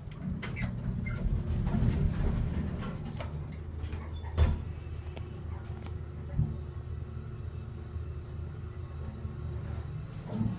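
Elevator cab travelling down one floor: a steady low rumble, stronger in the first few seconds, with a sharp thump about four and a half seconds in and a lighter one about two seconds later.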